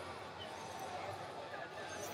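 Indistinct chatter of many people's voices across a large arena hall, steady and without any single sound standing out.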